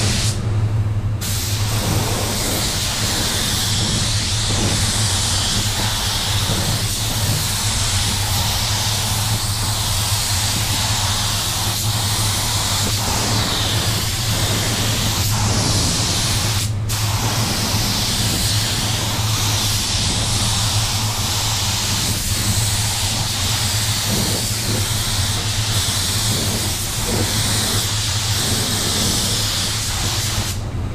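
Compressed-air paint spray gun spraying base coat, a steady hiss that stops briefly about a second in and again about 17 seconds in as the trigger is let off, over the steady low hum of the spray booth's air system.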